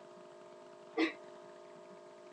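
A single short vocal burst from a person about a second in, over a faint steady hum.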